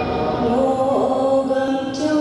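Chanted singing of a Nyishi folk song: voices holding one long steady note, with a brief dip in pitch about halfway through.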